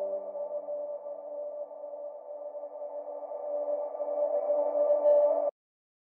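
Sustained electronic synth chord with no drums, the closing note of a melodic drumstep track, its low tones fading away first while the rest swells louder and then cuts off suddenly about five and a half seconds in.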